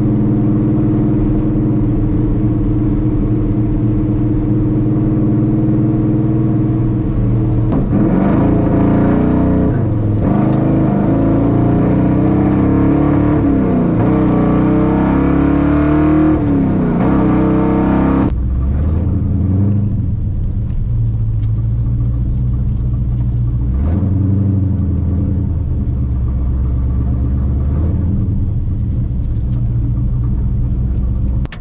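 El Camino's carbureted engine running while driving: a steady cruise at first, then from about eight seconds in it revs up hard, its pitch climbing and falling back several times. At about eighteen seconds it settles back to a lower, steadier note.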